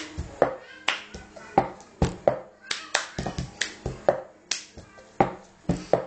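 Cup-song rhythm: hand claps, taps on the tabletop and a plastic cup knocked and set down hard on the table, in a repeating pattern of sharp hits.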